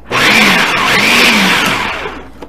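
Food processor with its chopping blade pulsed once, its motor running for nearly two seconds as it chops cabbage into small bits, then winding down near the end.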